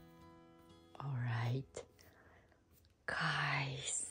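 Faint background acoustic guitar music, then a woman's voice making two short exclamations, one about a second in and one near the end.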